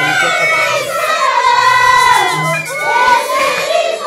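A group of girls singing together in high voices, a traditional Andean pastoras song, their pitch gliding from note to note with some notes held.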